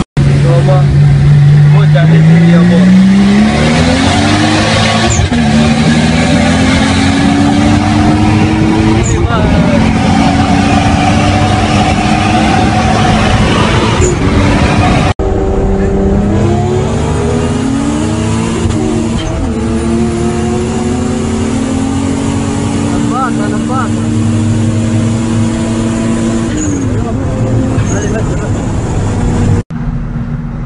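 Car engine, heard from inside the cabin, accelerating hard. Its pitch climbs, falls back at each gear change and climbs again, several times over. The engine is a Ferrari unit transplanted into a Datsun.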